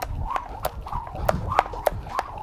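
Speed rope skipping: the rope ticks against the jump rope mat in a steady rhythm, about three ticks a second, with soft landings of socked feet underneath.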